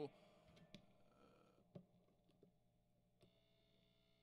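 Near silence: faint steady hum from an idle vintage Ampeg Reverberocket II tube guitar amp, with two faint clicks about a second apart.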